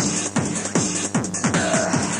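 Fast electronic dance music in the techno style of a 1994 club DJ session: a steady kick drum at about three beats a second under synth layers, with a short held synth note near the end.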